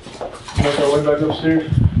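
A man's voice speaking indistinctly, then a few quick thumps and knocks near the end.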